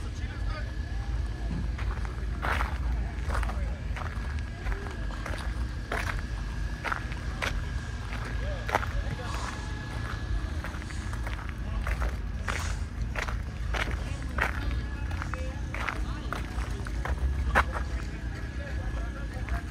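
Footsteps on gravel at a walking pace, a short sharp step every half second to a second, over a steady background of voices and music.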